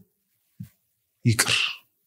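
A man's single short, forceful vocal burst into a microphone, with a hissy edge, followed by a faint breath.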